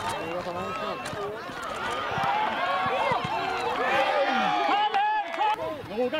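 Many overlapping voices shouting and calling at once, a mix of players and spectators. It grows louder about two seconds in.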